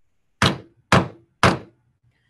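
Wooden gavel struck three times, about half a second apart, each a loud crack with a short ringing decay, gaveling the hearing to order.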